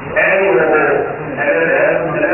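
A man's voice amplified through a handheld microphone, in two loud phrases with a short break about a second in.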